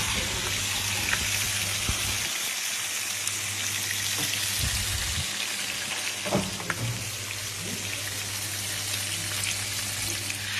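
Food sizzling steadily in hot dishes just out of a wood-fired oven, with a short knock about six seconds in and a low steady hum underneath.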